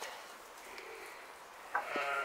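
Romanov sheep bleating: a single drawn-out call begins abruptly near the end and holds steady for about a second, after a quiet start.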